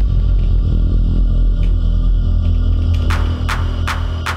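Electronic music from a Digitakt-sequenced hardware synth setup playing a breakdown pattern: a sustained low bass drone with no beat. About three seconds in, short hissing percussion hits come in, two or three a second.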